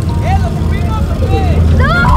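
A steady low rumble with voices calling out over it, and a rising cry near the end.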